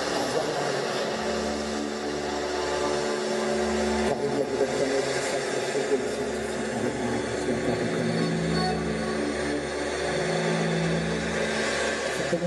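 Live experimental krautrock band playing a dense droning noise piece: held tones over a thick, noisy wash of sound. A deep bass drone underneath swells in blocks of a few seconds, breaking off briefly about every two to four seconds.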